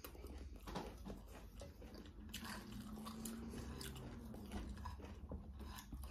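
Faint chewing and wet mouth smacks of someone eating rice by hand, in a run of small irregular clicks.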